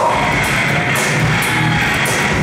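A live metal band playing loud and steady, led by distorted electric guitars.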